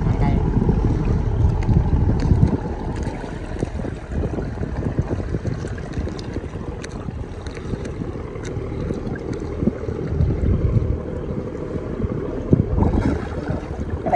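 Wind buffeting the microphone in gusts, a low rumble that is strongest in the first couple of seconds and again near the end, over river water sloshing around people wading chest-deep.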